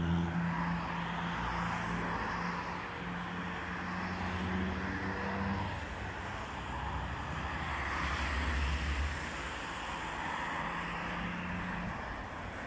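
Road traffic on a city boulevard: cars passing with tyre and engine noise swelling as each goes by, over a steady low engine hum.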